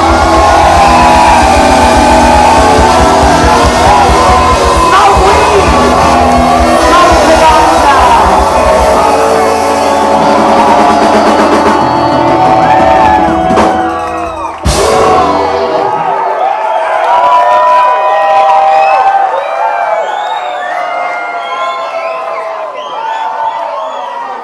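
Live rock band playing loudly, ending the song with a final hit about fifteen seconds in. The audience then cheers, shouts and whoops.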